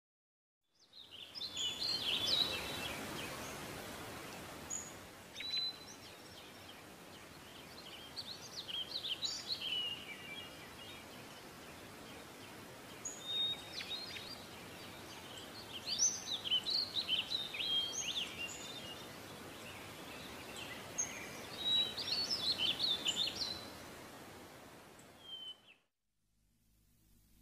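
Several birds chirping and trilling in repeated bouts over a steady outdoor hiss. It fades in about a second in and stops shortly before the end.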